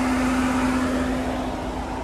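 Mahindra Thar's engine idling close by: a steady hum holding one even tone.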